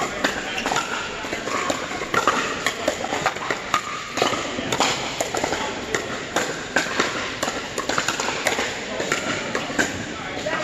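Pickleball paddles hitting a plastic ball: irregular sharp pops, several a second, from this and neighbouring courts in a large indoor hall, over background chatter.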